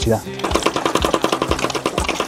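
Homemade PVC mini water pump with a marble valve being shaken fast in a tub of water: a rapid, even clatter of the marble knocking inside the tube, with water sloshing. The pump is being worked to start drawing water through the hose.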